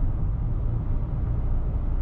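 Steady low road and engine noise heard from inside the cabin of a car driving on a highway.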